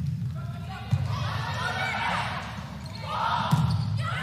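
Volleyball rally on an indoor hardwood court: the ball is struck with sharp smacks about a second in and again near the end, over steady crowd noise and voices in the hall.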